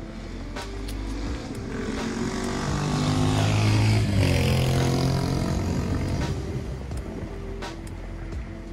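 A motor vehicle driving past on the road alongside. Its engine and tyre noise build to a peak about four seconds in and then fade, and the engine pitch drops as it goes by.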